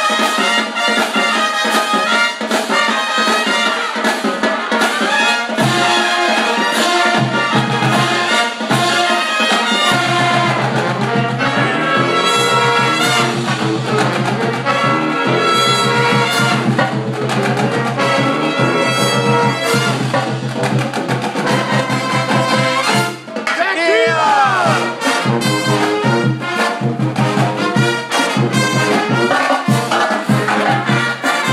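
Live brass pep band playing an up-tempo tune, with trumpets, trombones and saxophones over a steady sousaphone bass line. The music briefly drops out about three quarters of the way through, then comes straight back.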